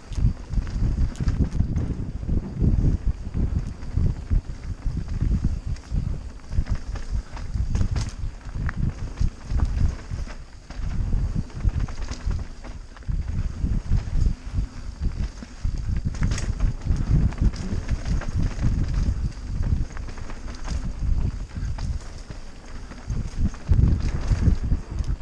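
Mountain bike riding fast down a dirt singletrack: tyres rumbling over the dirt with quick irregular knocks and rattles of the bike over bumps, and wind buffeting the helmet-mounted microphone.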